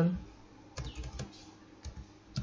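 Computer keyboard typing: a quick run of about five keystrokes about a second in, and one more keystroke near the end.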